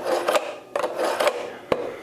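A hand-forged, non-stainless steel knife blade drawn a few times through the slots of a pull-through knife sharpener, each pull a short rasping scrape, to sharpen a dulled edge. A sharp click comes near the end.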